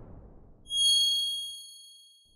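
A fading whoosh, then a single bright, high chime struck about two-thirds of a second in, ringing with several clear tones and dying away over a second or so: the sound effect of an animated logo card.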